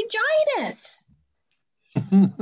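A woman speaking in an animated voice, finishing a sentence in about the first second. Then about a second of dead silence, and another voice starts abruptly right at the end.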